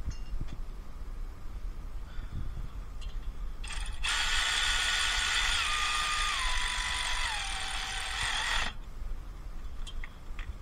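Kobalt 24-volt cordless ratchet running for about five seconds, starting a few seconds in, its motor pitch falling in steps as it turns a bolt and loads up.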